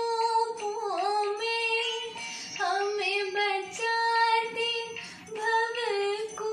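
A woman singing a devotional song (bhajan), holding long high notes with small pitch bends and ornaments, with a short breath break a little after five seconds in.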